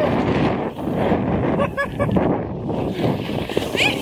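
A sled sliding fast down a snowy slope: a steady rush of snow scraping under the sled, with wind buffeting the microphone.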